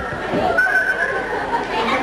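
Children and audience chattering in a hall. A thin, high whistle-like tone rises about half a second in and holds for about a second.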